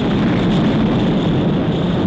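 Loud, steady low rumble of a large dynamite explosion, carrying on from the blast that went off a moment before.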